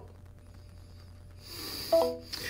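A quiet pause with faint room hum, then, about a second and a half in, a man's audible breath that rises and ends in a brief voiced sound just before he speaks.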